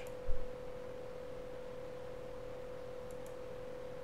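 A steady, even tone in the recording, like a faint electronic whine. A brief low thump comes just after the start, and two faint ticks come about three seconds in.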